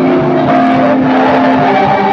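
Church choir singing a gospel song, voices holding long steady notes in harmony.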